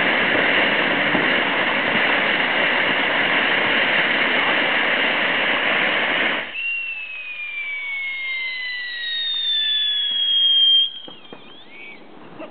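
Unicorn ground fountain firework spraying sparks with a loud, steady hiss that cuts off about six and a half seconds in. Then two whistles fall slowly in pitch for a few seconds and stop near the end.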